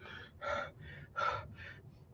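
A man breathing hard and fast through an open mouth, about five quick gasping breaths, from the burn of an extremely hot chili sauce.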